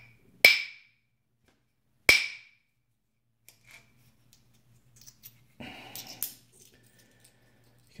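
Copper bopper striking a flint preform twice in percussion flaking, about a second and a half apart, each a sharp crack with a brief ring. Faint clicks and a short rustle of handling follow.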